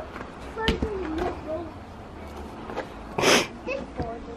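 A toddler's brief wordless vocal sounds, with a sharp click just before them and a short loud rustle about three seconds in.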